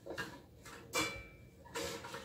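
Household items being handled and set down: three light knocks and clatters, the middle one followed by a brief ringing note.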